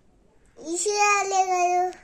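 A toddler's voice holding one long, sung-like note, starting about half a second in and lasting about a second and a half.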